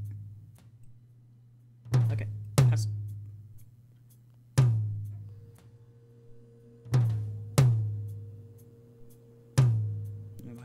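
Soloed rack tom hits playing on a loop: six strikes in a repeating pattern of three every five seconds, each a low, pitched thud that dies away. The tom is playing through an EQ whose band boost is being raised while it loops.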